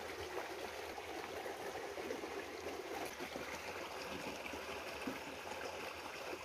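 Water poured from a plastic bottle into a small plastic toy tub, a steady faint trickle.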